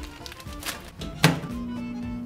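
Food packet being handled and placed in a small microwave oven, the door shutting with a single thunk just over a second in, then the oven starting with a steady low hum as its timer dial is turned.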